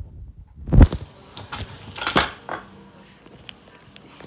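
A cabinet door being moved and knocked: a heavy thump about a second in, then several light knocks and rattles.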